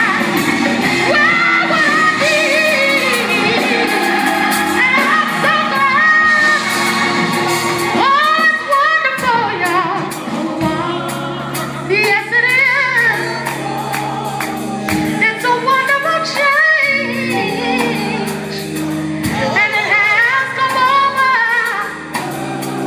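A woman singing a gospel song live into a microphone, holding and sliding between notes, over instrumental accompaniment with steady low sustained notes.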